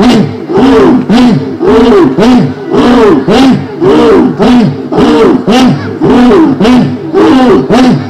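Loud rhythmic chanting by male voices through a PA system: short rising-and-falling phrases repeated about three times every two seconds.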